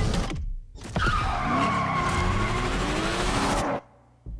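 Trailer sound effects: a loud skidding screech with gliding pitches, after a brief dip about half a second in, cutting off suddenly near the end.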